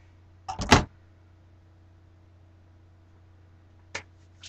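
A short, loud rustling knock about half a second in, then a single sharp click near the end, over a steady low electrical hum.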